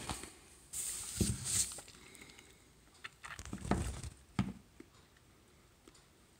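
Faint handling noises as a small vinyl figure is picked up and turned in the hand: soft rustles and light taps in a few short spells, with one sharp click about four and a half seconds in.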